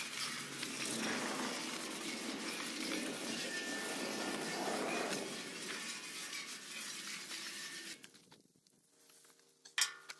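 Garden hose spray nozzle jetting water onto a bare steel truck frame, a steady spattering hiss as the degreaser is rinsed off. It stops about eight seconds in, followed by a brief click.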